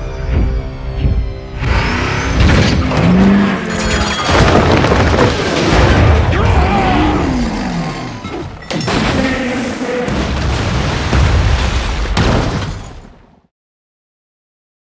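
Action film sound mix: a dramatic music score, then a sudden loud crash about a second and a half in, followed by continuing crashing and debris impacts under the music. The sound fades out shortly before the end.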